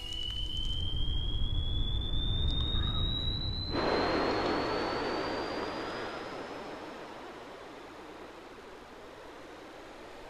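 Jet airliner engine noise: a thin whine climbing slowly in pitch over a low rumble, then, about four seconds in, a rush of jet noise that swells and slowly fades away.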